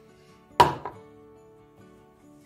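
A single sharp knock about half a second in, then a short fade, over soft background music.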